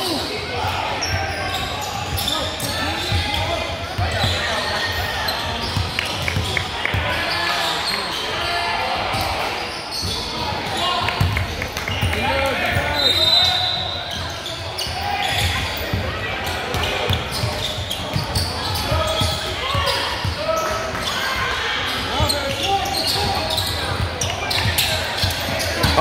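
Gym crowd chatter, with overlapping voices of spectators and players echoing in a large hall, and an occasional basketball bounce on the hardwood floor during a free-throw stoppage.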